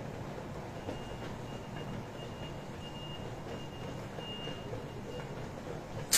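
A faint high-pitched electronic beep repeating on and off for about four seconds, over a steady low background hum.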